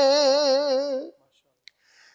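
A man's unaccompanied naat recitation, holding one long sung note with a steady wavering vibrato. The note breaks off about halfway through, leaving a short, near-silent pause.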